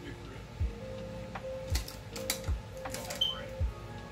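Makeup brushes clicking and clattering as someone rummages through a crowded brush container, with a scatter of small knocks and clicks.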